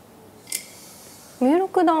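A single crisp click of a wooden shogi piece set down sharply on a wooden board, about half a second in.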